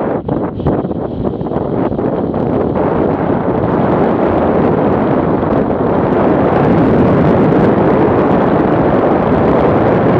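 Wind rushing over the microphone of a motorcycle riding at highway speed, with the bike's running mixed in. The rush grows louder over the first six seconds or so, as at rising speed, then holds steady.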